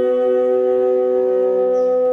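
Baritone and tenor saxophones holding long, steady notes together in a free-jazz duet, their two pitches sustained against each other without a break.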